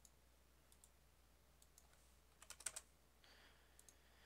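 Near silence with faint clicks from working a computer. A quick run of about five clicks comes about two and a half seconds in.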